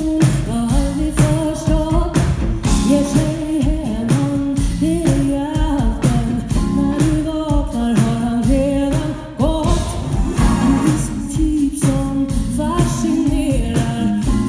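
Live funk-soul band playing, with a woman singing lead over drums, bass and keyboards, heard from the audience.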